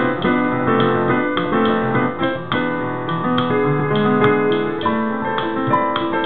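Kurzweil digital piano played with a piano voice: a melody of single notes struck a few times a second over held chords in the bass.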